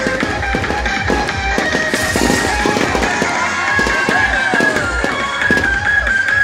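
Fireworks bursting and crackling overhead, with a run of sharp bangs and a crackling hiss about two seconds in. Music with a steady beat plays underneath.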